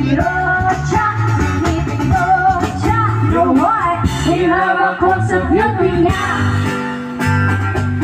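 A live band playing, with two women singing the melody over electric bass, electric guitar and a cajon keeping a steady beat.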